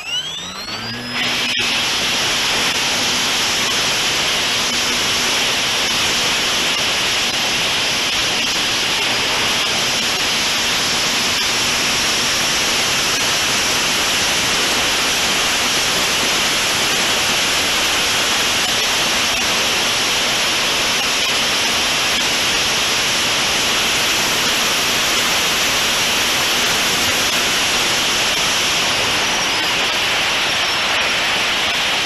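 Electric motor and folding propeller of a Multiplex Heron RC glider spinning up with a rising whine at the start, then running at full power through a steady climb. The loud, even rush of propeller noise and airflow on the onboard camera fills the rest.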